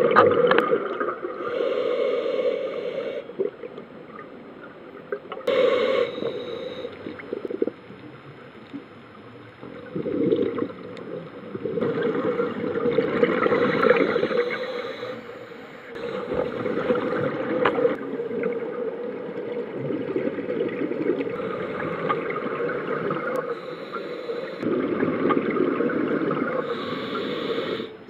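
Scuba diver breathing through a regulator underwater: exhaled bubbles gurgling past the housing in repeated surges of a few seconds, with quieter stretches between breaths.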